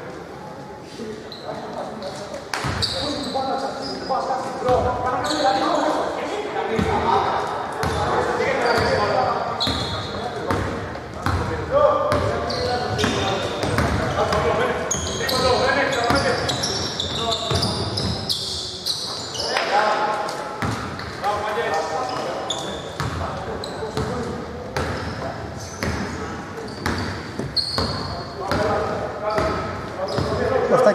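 A basketball being dribbled on a hardwood court during live play, with repeated bounces, the brief high squeaks of players' shoes, and indistinct voices from the court, all echoing in a large, near-empty indoor hall.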